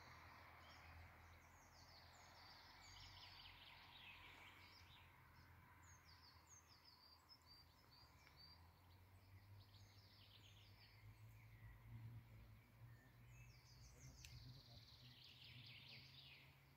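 Near silence outdoors: faint high bird chirps repeating throughout, busiest near the end, over a low steady rumble.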